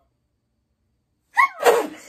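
A woman sneezes once, about one and a half seconds in: a short rising intake "ah" and then a loud burst, turned into her elbow.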